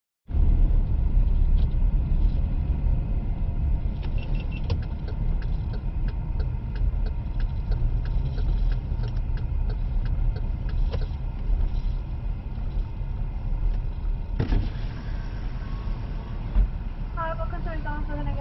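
Inside a car's cabin as it rolls slowly: a steady low engine and road rumble with scattered light clicks. About fourteen seconds in there is a sharp knock, and near the end a voice is heard.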